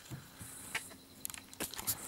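Crickets chirping in a faint, high-pitched band that comes and goes, with a few light clicks and knocks in the second half.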